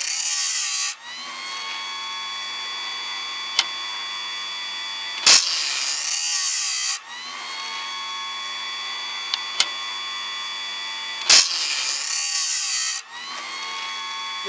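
Homemade automatic band saw blade sharpener running: its grinder motor hums steadily while the grinding wheel grinds a steel blade tooth three times, each grind a loud hiss of about a second and a half, about six seconds apart and each starting with a sharp click. Lighter single clicks fall between the grinds as the machine indexes on to the next tooth.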